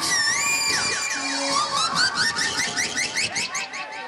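Electronic sound effect from the stage music: swooping, warbling tones that break into a fast run of short rising chirps, several a second, before the band music comes back in just after.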